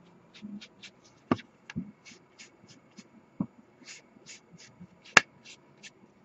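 Sponge with ink dabbed and rubbed along the edges of a cardstock card to distress them: a quick run of soft, brushy scuffs, with a few sharper clicks among them, the loudest a little past five seconds in.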